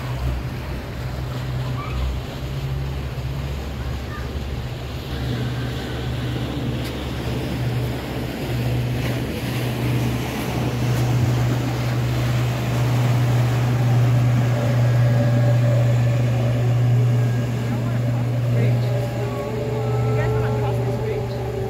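Steady low engine drone over churning water, typical of a motorboat on the river, growing louder in the second half.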